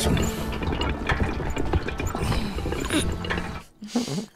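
Animated episode soundtrack: quiet music under clattering, clicking mechanical sound effects. It cuts out abruptly near the end.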